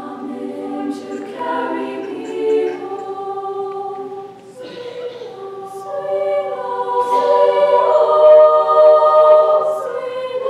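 Girls' choir singing sustained chords in several-part harmony, with a short break for breath about halfway through, then swelling louder toward the end.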